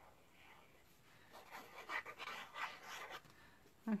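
Faint scratchy sound of a glue bottle's fine nozzle drawn in squiggles across card as glue is squeezed out, lasting about two seconds from just over a second in.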